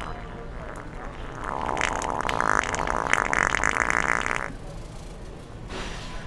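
A long, sputtering, wet fart noise from a handheld fart-sound toy. It starts about a second and a half in, lasts about three seconds and breaks off suddenly.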